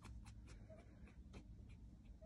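Near silence: faint scratchy ticks from a newborn puppy being handled in bare hands, with one faint short squeak from a newborn puppy under a second in.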